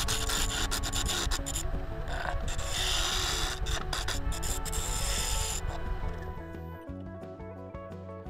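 A gouge cutting a spinning laminated hardwood blank on a wood lathe: a dense scraping, rasping sound of shavings being peeled off, with rapid ticks of chips. The cutting stops about five and a half seconds in, leaving background music that runs underneath throughout.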